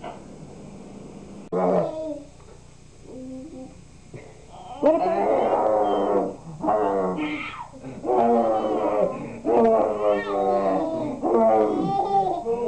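Playful growling and roaring vocal sounds during rough play on the floor. They come in long bouts that waver up and down in pitch, starting about five seconds in, after a single short sound earlier.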